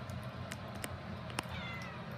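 Domestic tabby cat giving one short meow about one and a half seconds in, falling slightly in pitch, with a few light clicks before it over a steady low hum.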